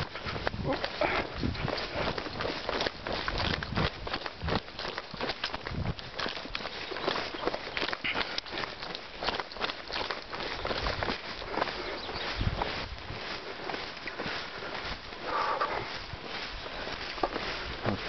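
A person jogging across a grassy meadow: a long run of quick footfalls on grass, mixed with knocks and rubbing from a hand-held camera jolting along.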